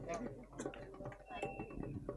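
Faint background voices of several people talking off the microphone, with a few small clicks.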